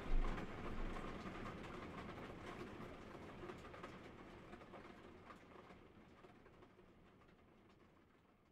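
Faint background ambience sound effect fading out slowly, with a low thump just after the start.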